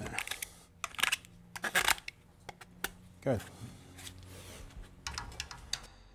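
A knife blade scraping the inside edge of a freshly cut PVC drainpipe end in short, irregular scrapes and clicks, reaming off the burr so the pipe is smooth inside.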